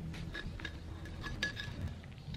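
Small steel jin pliers gripping and peeling bark off a juniper branch: a scatter of light clicks and small metallic clinks as the bark is stripped to form a jin.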